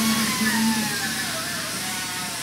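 A song plays: a gliding melody line over a steady low note.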